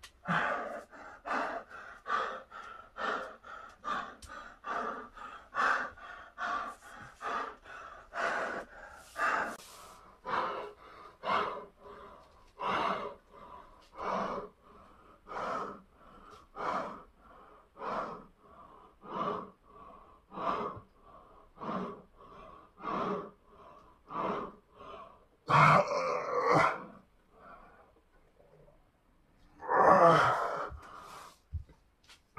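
A man's hard, quick breathing during strength exercise: short breaths in and out one after another, about two a second at first and slower later on. One louder, longer breath comes near the end.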